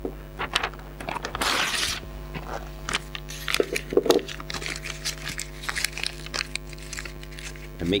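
Paper being handled, crinkled and torn by hand, with one longer tearing noise about a second and a half in and scattered crackles after, over a steady low electrical hum.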